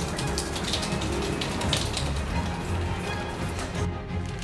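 Background music with sustained low notes and quick, light percussive taps.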